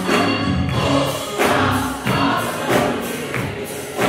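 Youth gospel choir singing together with keyboard accompaniment over a steady beat.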